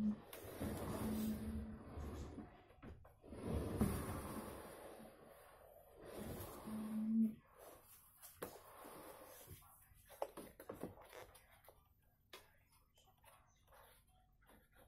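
Mirrored wardrobe sliding door being rolled back and forth on its overhead hanging rail. There are three rolling passes, the first and last with a short low hum from the rollers. These are followed by a few faint clicks and knocks as the door is handled.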